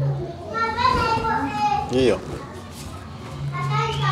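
Children's voices close by: a child talking in a high voice, ending in a short rising-and-falling call about two seconds in.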